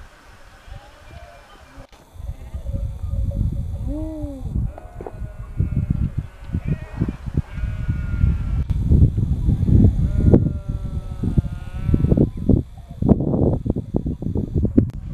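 A flock of sheep bleating, many calls one after another and some overlapping, starting about two seconds in and thinning out near the end. Underneath runs a low, gusting rumble of wind on the microphone.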